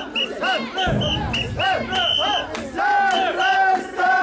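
Mikoshi bearers shouting a rhythmic chant in unison, punctuated by short, shrill whistle blasts in time with the chant; the last second holds one long drawn-out call.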